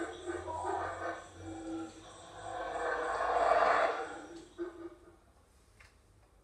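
Wildlife-documentary soundtrack from a coursebook listening exercise, played through a speaker in a small room: animal sounds with music, swelling into a louder noisy passage about two and a half seconds in and fading out about five seconds in.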